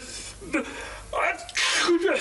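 A person's sneeze: a short voiced in-breath rising into a loud, noisy "choo" burst near the end.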